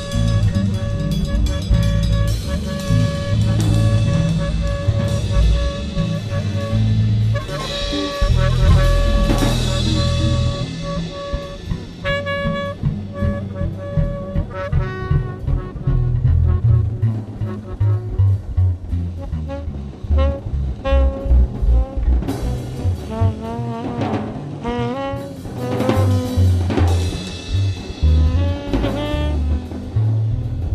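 Free jazz improvisation on tenor saxophone, drum kit and bass. The saxophone holds a long steady note through roughly the first half, then plays short bending, wavering phrases in the second half, while drums and bass churn underneath.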